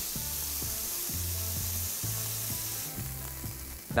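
Strips of sirloin steak sizzling in a very hot frying pan as they are stirred with tongs. The sizzle is a steady hiss that fades about three seconds in.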